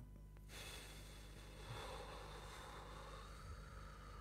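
A woman slowly blowing out a long, faint breath through pursed lips, starting about half a second in: the controlled exhale of a deep diaphragmatic breathing exercise.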